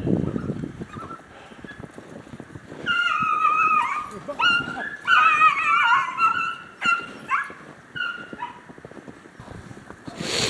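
A pack of beagle hounds baying as they run a rabbit in full cry, several voices overlapping in short falling cries from about three seconds in until near the end: the dogs are giving tongue on the rabbit's scent. A low rustle comes right at the start.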